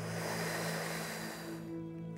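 A long hissing in-breath drawn through the mouth over the tongue pressed behind the lower teeth: the inhale of sitkari pranayama, the cooling breath. It lasts about a second and a half and fades out, over soft background music.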